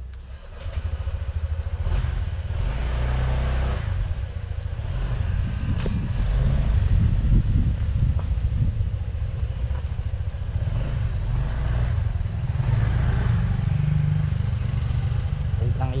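Motor scooter on the move, its engine and road noise under a heavy, uneven wind rumble on the camera's microphone.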